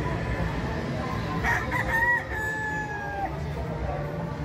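A gamefowl rooster crowing once, about one and a half seconds in: a few short broken notes, then a long held note that drops slightly as it ends. Steady low background noise runs underneath.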